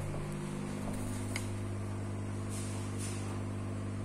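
Steady low electric hum of the laser engraving machine's fans and pumps left running after the job, with a faint tick about a second and a half in.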